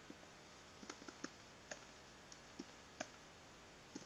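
Faint computer keyboard keystrokes, a few irregular single clicks spread across a few seconds, as a short word is typed.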